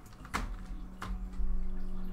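Two brief crinkling clicks as a foil-wrapped trading-card pack is handled and set down on a digital scale, about a third of a second and a second in. Under them, from about half a second in, a low steady hum.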